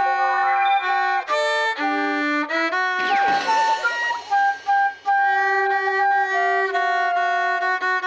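Viola and flute playing a duet in practice, moving through held notes in steps, with a falling whistling glide about three seconds in. The two parts sound off together, a clash that comes from the flute reading the viola's part at the wrong pitch.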